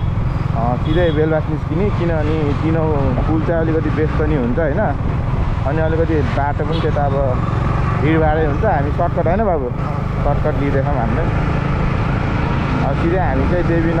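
Motorcycle being ridden at steady speed, its engine and road noise making a continuous low rumble.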